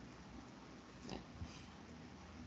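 Near silence: faint room tone on a video call, with two brief soft sounds a little after a second in.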